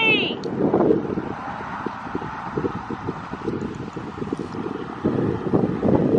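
Wind buffeting the microphone: a low rumbling noise with uneven thumps, louder again near the end.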